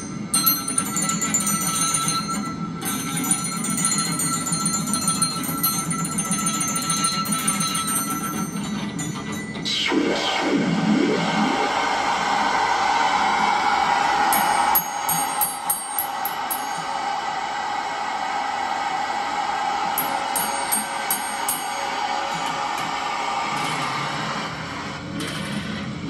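Live experimental electronic noise music from toy keyboards run through effects pedals. It starts as layered steady tones with rapid high ticking, then changes abruptly about ten seconds in to a swooping pitch glide over a denser drone, with quick clicking flurries later on.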